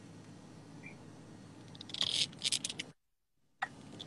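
Low background hiss of a live video-call audio feed, with a few short crackly bursts about two seconds in. Near the end the audio cuts out to dead silence for about half a second: the connection dropping out.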